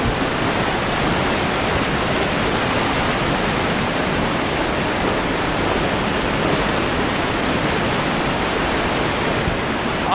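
Loud, steady rush of whitewater, heard close up as the kayak runs through a steep boulder rapid.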